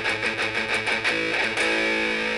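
Electric guitar picked in quick, even strokes on a fifth (power chord) at the fifth fret of the sixth string, then a chord left to ring out from about a second in.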